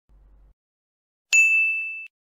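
A single bell-like ding about a second and a quarter in: one clear high tone that fades and is cut off after under a second.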